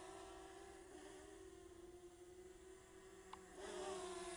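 DJI Mavic Mini's propellers giving a faint, steady buzz as the small quadcopter flies, fainter in the middle and louder again near the end. A small click about three seconds in.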